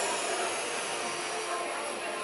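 Helium hissing steadily out of a disposable helium balloon cylinder's valve into a party balloon as it inflates.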